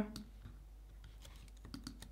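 A few faint, scattered clicks from a computer's input controls being worked while a block of code is selected and scrolled.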